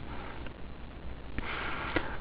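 A pause in a man's speech: low steady background hiss with a faint click, then a short breath in through the nose near the end.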